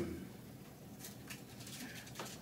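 Quiet room tone in a pause between sentences, with a few faint ticks about halfway through.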